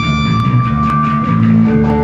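Ska punk band playing live and loud, with guitar and bass guitar prominent.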